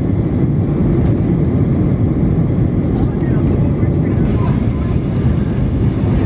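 Steady low roar inside a jet airliner's cabin in flight, the engine and airflow noise heard from a passenger seat, with faint voices under it.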